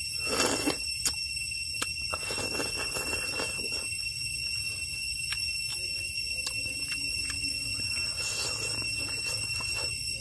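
Close-up eating sounds: a slurp of rice porridge from a spoon about half a second in, then wet chewing and mouth clicks, with another short slurp near the end. A steady high-pitched whine of several tones runs underneath.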